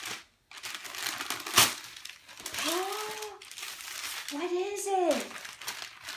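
Wrapping paper and tissue paper crinkling and tearing as a toddler unwraps a present, with one sharp snap about a second and a half in. In the second half a young child's voice calls out twice, each call rising then falling in pitch.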